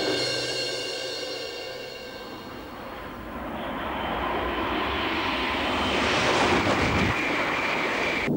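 A high-speed electric train approaching on open track and rushing past, its noise building steadily over several seconds to a loud pass. At the start, a ringing chord of title music dies away.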